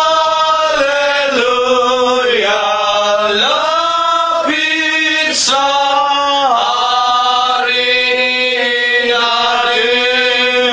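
Slow, chant-like worship singing: voices hold long notes of about a second each that step up and down in pitch.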